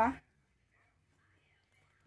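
Near silence: a man's word cuts off at the very start, then nothing audible but faint room tone.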